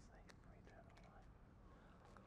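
Near silence with a man's faint whisper, the priest's quiet private prayer before receiving the host, and a few small clicks.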